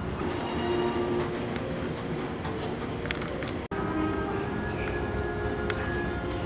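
Steady airport-terminal background hum and noise with several held mechanical tones. It is broken by a brief dropout about three and a half seconds in, where the picture cuts.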